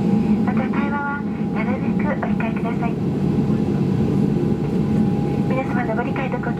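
Cabin of a Boeing 737-800 taxiing: a steady low rumble from the engines and cabin air, with a thin steady tone over it. A flight attendant's announcement in Japanese comes over the cabin PA about half a second in and again near the end.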